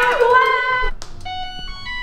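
A washing machine's control button clicks, then the machine plays its short electronic power-on tune of stepped beeping tones.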